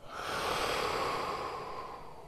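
A man's long, slow audible breath through the mouth and nose while he holds a yoga stretch, starting suddenly, strongest in the first second and fading over about two seconds.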